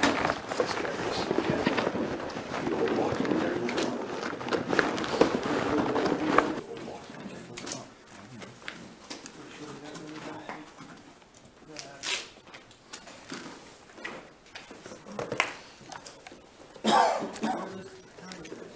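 Indistinct, muffled voices and handling noise for the first six seconds or so. Then an abrupt drop to quieter room sound with a thin, steady very high whine and a few sharp knocks, the loudest just before the end.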